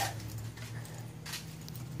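A steady low hum with a couple of faint, brief rustles, one near the start and one a little past a second in.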